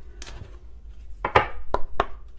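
Tarot cards being handled on a tabletop: a few sharp slaps and taps as the deck is shuffled and knocked against the table, the loudest a little past the middle.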